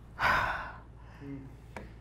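A man's single heavy, noisy breath about a quarter of a second in, lasting about half a second: the breath of relief of a nervous pilot who has just brought his drone down. A brief faint murmur follows near the middle.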